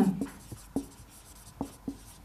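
Marker pen writing on a whiteboard: a handful of short, separate strokes of the tip, each a quick tap or squeak, about four in two seconds.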